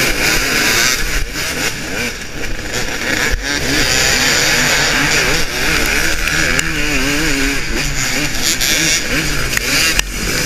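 A pack of off-road dirt bikes at full throttle off the start of a race, heard from a rider's helmet camera, with the rider's own KTM 300 XC two-stroke engine revving up and down through the gears over the others.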